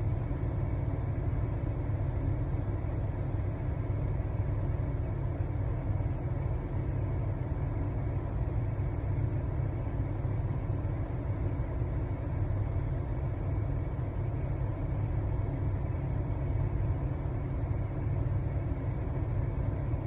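Steady low rumble of a car's engine running, heard from inside the cabin, with no change in pitch or level.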